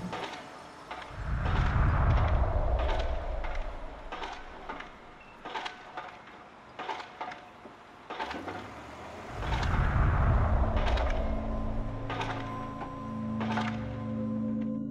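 Soundtrack of an animation: two swelling low rumbles several seconds apart, with scattered sharp clicks between them. Steady droning tones come in near the end.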